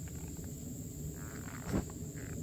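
Folded wool blankets rustling against a canvas bedroll as they are shifted and set down, with a short louder brush of fabric about three-quarters of the way through. A steady high-pitched insect drone sounds behind it.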